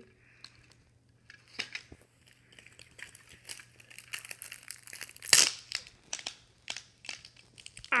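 Thin plastic packaging crinkling and tearing as a bag of water balloons is pulled open at the mouth: a run of small crackles and snaps, with one loud sharp rip about five seconds in.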